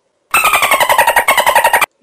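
A loud, harsh rattling buzz laid over the picture as a scare effect, pulsing rapidly with a slightly falling pitch for about a second and a half, then cutting off abruptly.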